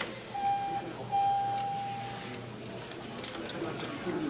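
Schindler 500A elevator chime sounding two notes at the same pitch: a short one, then a longer one about a second in that slowly fades.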